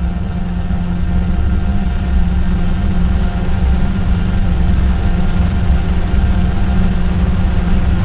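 A steady, low electronic drone played over loudspeakers, mostly deep bass with faint steady tones above it, slowly growing louder.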